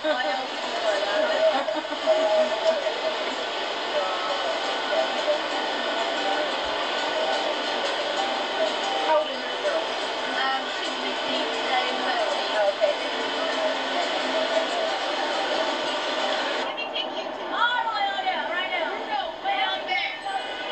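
Indistinct voices over a steady background din, played back through a television's speaker and re-recorded, so the sound is thin, with no bass. Near the end, after a cut in the tape, a single voice comes through more clearly.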